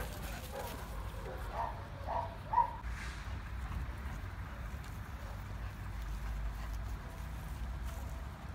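Two dogs playing, with a few faint short vocal sounds in the first three seconds, over a steady low rumble.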